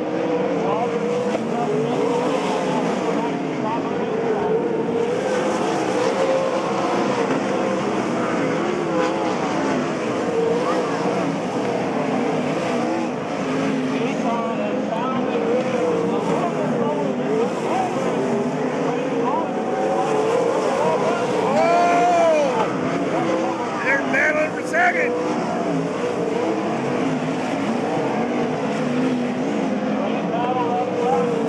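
Sprint car engines running on a dirt oval, a steady, continuous sound whose pitch wavers up and down as the car laps, with a brief louder swell a little past twenty seconds in.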